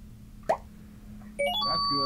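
Added sound effect: a short falling blip about half a second in, then a quick rising run of chime-like notes near the end, held on a final note.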